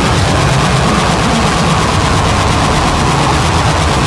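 Harsh noise music: a loud, unbroken wall of distorted noise with a low rumble underneath and a droning band near 1 kHz.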